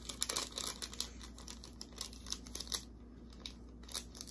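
Paper price tag being handled: quick irregular crackling and rustling, thinning out after about three seconds.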